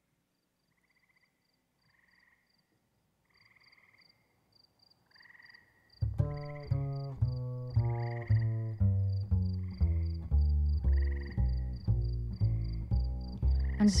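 Song intro that opens with faint croaking and a steady high chirping, a night-time pond soundscape. About six seconds in, a plucked bass line comes in loud, a bouncy note about every half second.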